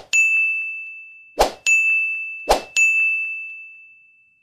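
Three animation sound effects a little over a second apart, each a short sharp hit followed by a bright chime-like ding that rings and fades over about a second, as buttons pop up on an animated subscribe screen.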